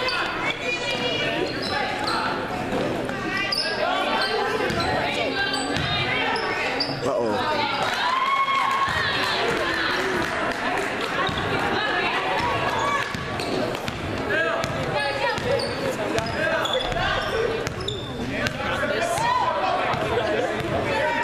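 Basketball being dribbled and bounced on a hardwood gym floor, under the overlapping voices of players and spectators echoing in a large gymnasium.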